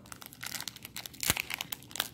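Foil wrapper of a baseball card pack crinkling as it is handled, a string of small crackles with one sharper snap a little past halfway.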